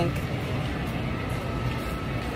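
Steady supermarket ambience: a low, even hum with a faint steady high tone running through it.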